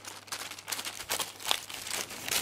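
Baking paper crinkling as hands press a ball of ground beef flat inside the folded sheet, with a couple of sharper crackles about halfway through.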